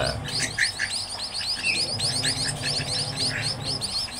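Young munias (emprit) chirping: a steady run of short, high-pitched chirps, several a second.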